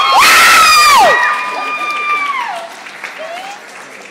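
Young girls screaming in delight, at least two high-pitched voices overlapping, at hearing a yes from the judges. The loudest scream peaks in the first second, a long held scream drops away about two and a half seconds in, and shorter, fainter shrieks follow.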